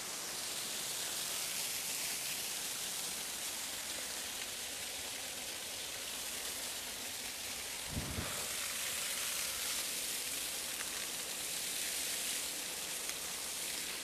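Steady rushing hiss of a waterfall's falling water, with a brief low thump about eight seconds in.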